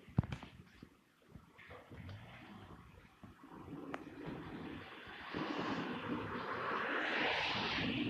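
Road traffic: a sharp knock just after the start, then a passing vehicle's tyre and engine noise swelling over the last few seconds.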